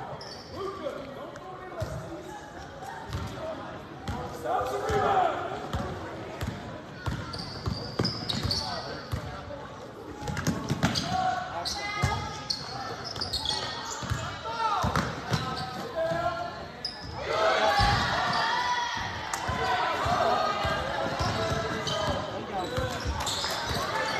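Basketball bouncing on a hardwood gym floor during play, with indistinct voices calling out, all echoing in a large gymnasium.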